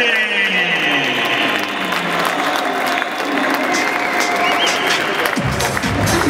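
Crowd applauding and cheering over walk-on music; a falling sweep in the music opens it, and a heavy bass beat comes in near the end.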